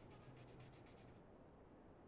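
Faint scratching of a felt-tip marker on paper as a square is coloured in, quick back-and-forth strokes about eight or nine a second. The strokes stop a little over a second in.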